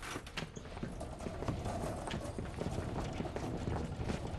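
Quick footsteps on a hard floor: a dense, irregular run of shoe clicks over a low steady room hum.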